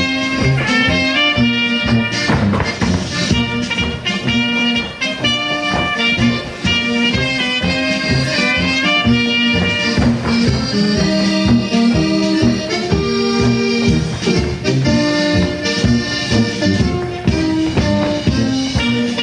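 Danube Swabian brass-band folk dance music, instrumental, with a steady beat in the bass under a held brass melody.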